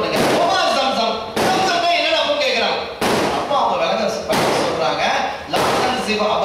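A man's voice lecturing emphatically into a microphone, in loud phrases with abrupt starts.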